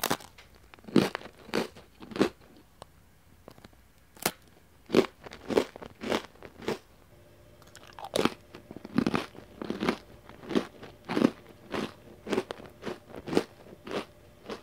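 Crisp, hard baked egg-and-flour cracker (niwaka senbei) being bitten and chewed: a first sharp bite, then a string of irregular crunches about one or two a second.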